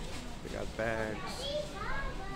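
A child's high voice calling out about a second in and again near the end, over a steady background hubbub of a busy shop.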